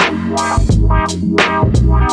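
Instrumental hip-hop beat: drum hits about three times a second over a heavy bass line and a pitched melodic part.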